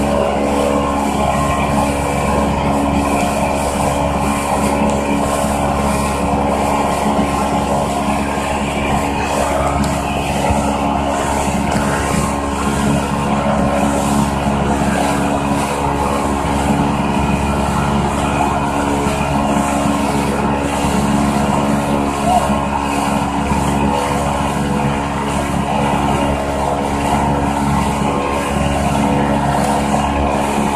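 Speedboat engine running steadily at high speed, with the rush of water from the wake.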